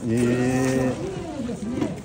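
A man's voice holding one long, low, steady vowel for about a second, then going on in talk.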